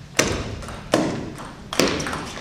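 Table tennis rally: the celluloid ball clacking off the rackets and table, three sharp hits about 0.8 s apart, each echoing in the large hall.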